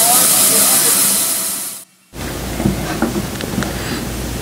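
Wood-Mizer EG200 board edger running as a board is fed through its saws: a loud, steady hiss that cuts off abruptly about halfway. After that comes a quieter, steady low machine rumble with a few light knocks.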